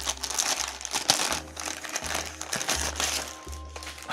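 Clear plastic bag crinkling and rustling as an instruction booklet is pulled out of it by hand.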